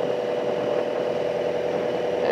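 Steady engine drone, a constant hum that does not change in pitch or level.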